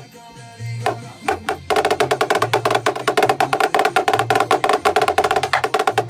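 Snare drums struck with sticks: a few scattered hits, then from under two seconds in a fast, dense run of strokes, a drumline-style snare solo. Underneath runs a beat with low bass notes.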